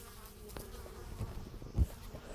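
Honey bees buzzing at the hive entrance, a faint steady hum of wings. There is a short low thump near the end.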